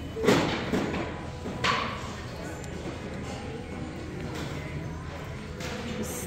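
Handled store goods knocking: a thud about a third of a second in and a sharper knock just under two seconds in, over a steady background hum of the shop.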